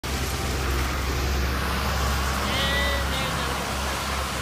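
Street traffic on a wet road: a steady low rumble with tyre hiss. A brief high-pitched call comes about two and a half seconds in.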